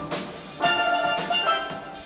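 A steel band of many steel pans playing a soca tune, struck notes ringing in chords. A loud chord is hit together about half a second in, with another accent about a second later.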